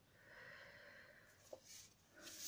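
Near silence: faint room tone with a soft hiss and one small click about one and a half seconds in.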